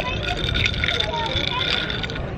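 Wind buffeting the microphone as a steady low rumble, with faint voices in the background.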